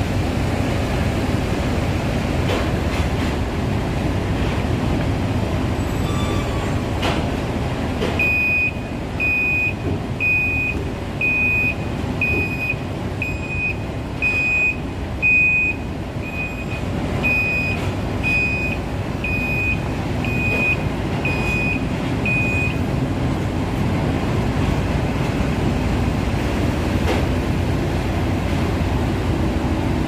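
Dump truck reversing alarm beeping about once a second, some fifteen times, starting about eight seconds in and stopping about two-thirds of the way through. Under it, a steady low rumble of heavy machinery and truck engines.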